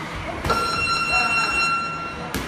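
Boxing gym round timer sounding a steady electronic buzzer tone that starts suddenly about half a second in and holds for nearly two seconds, marking the end of the round.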